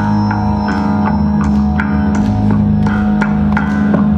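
Live band playing: a held low note over bass and electric guitar, with sharp percussive hits about twice a second.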